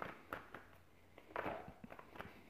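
A few soft rustles and taps of a deck of oracle cards being handled and shuffled in the hand.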